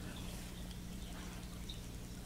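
Aquarium filter running: a low, steady hum under a faint hiss.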